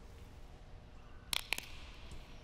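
A large communion host being broken by hand at the altar: two sharp, crisp snaps about a fifth of a second apart, partway through, over quiet room tone.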